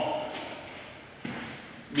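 A single dull thud about a second in, a shoe landing on the gym floor as a man steps into a lunge, with a short echo from the large room.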